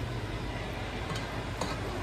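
A steady low kitchen hum, with a few faint clicks and soft scraping as the camera is handled and a spatula stirs a flour roux in a pot.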